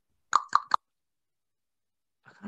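Three quick, short clicks about a fifth of a second apart, then nothing.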